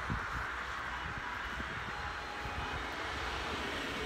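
Steady outdoor rushing noise with a low, fluctuating rumble, the hum of a distant engine-like background.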